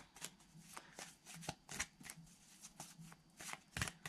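A tarot deck being shuffled and handled by hand: a faint, irregular run of quick card clicks and rustles.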